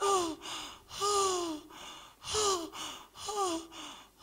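A girl's loud, voiced gasping breaths, about one a second: each a short cry that falls in pitch, with a noisy intake of breath between them.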